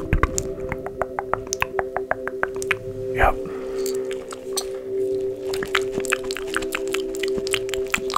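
Many quick, irregular clicks and taps close to the microphone, of the kind made in an ASMR ear-examination roleplay. Soft background music with steady held notes plays under them.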